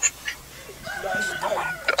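Muffled, stifled laughter held back behind a hand.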